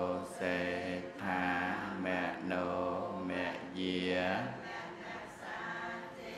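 A Buddhist monk chanting alone in a male voice, holding long steady notes in phrases of about a second each, with short breaths between.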